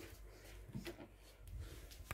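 Faint handling noise from a handheld phone being moved about: a few soft clicks and rustles over a low steady hum.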